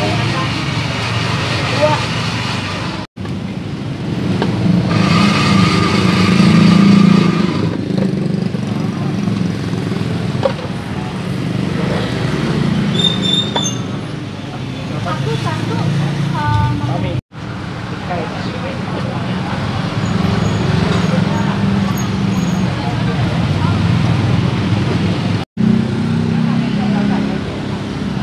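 Street ambience: a continuous rumble of passing road traffic with indistinct voices chattering in the background.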